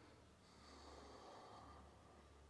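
Near silence: a faint, soft breath through the nose, from about half a second in to near the end, over a low steady room hum.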